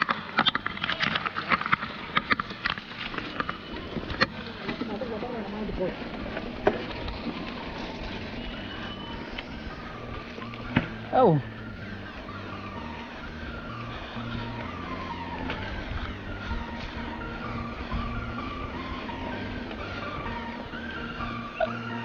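Mountain bike clattering and rattling over a rough, rutted dirt trail for the first few seconds, then background music with held, stepping notes takes over. One falling pitch sweep about eleven seconds in.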